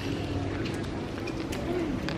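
A bird cooing faintly, low soft notes over steady outdoor background noise.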